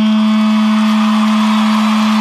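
Distorted electric guitar holding one steady, sustained note through an amplifier, a droning intro before the band comes in on a grindcore/powerviolence track.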